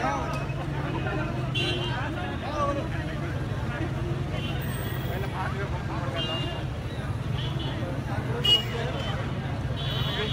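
Dense crowd babble: many voices talking and calling out at once, none standing out, over a steady low rumble.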